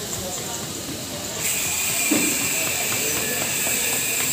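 Background murmur with faint voices. About a second and a half in, a steady high hiss starts suddenly and keeps going.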